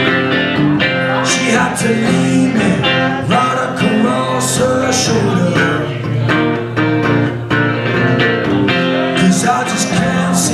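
Live blues-rock song: a man singing over his own electric guitar, a Flying V, strummed through an amplifier.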